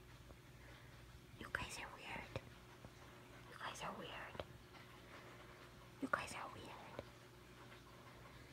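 A person whispering in three short bursts, with a few faint clicks between.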